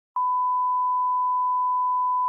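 Steady test tone, one unchanging beep that starts a moment in: the line-up tone that goes with colour bars.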